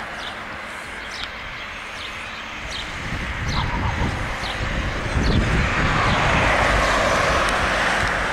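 A road vehicle approaching, its engine rumble and tyre noise growing steadily louder over the second half. Small birds chirp now and then in the first half.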